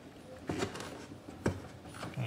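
Two sharp knocks about a second apart, with rubbing between them: hands handling the fuel pump and its pickup hose, with a metal hose clip, inside the fuel tank.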